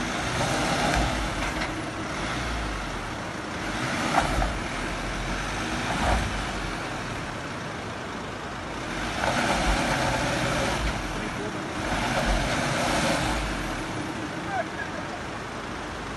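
Mercedes-Benz Sprinter van's engine running at low speed as the van creeps over landslide rock and mud, with tyre noise on the loose debris swelling and fading several times. A couple of short knocks about four and six seconds in.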